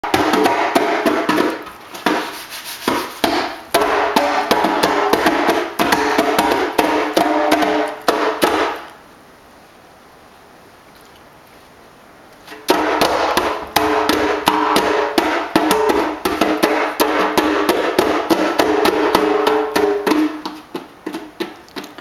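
Percussive music with a quick, busy beat and steady ringing tones, mixed with a toddler slapping the skin of a djembe-style hand drum. It drops to quiet room tone for about four seconds in the middle, then the beat starts again.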